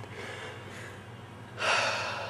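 Quiet at first, then about one and a half seconds in a person takes a sudden sharp breath, a breathy gasp that trails off.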